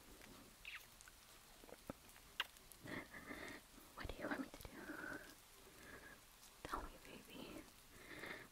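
A woman whispering faintly and breathily, close to the microphone, with small mouth clicks in between.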